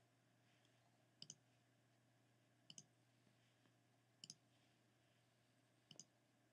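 Near silence broken by four faint double clicks of a computer mouse, evenly spaced about a second and a half apart.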